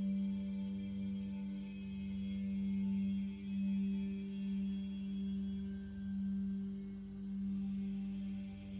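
Meditation background music: a sustained low drone with fainter ringing overtones above it, swelling and easing gently in loudness.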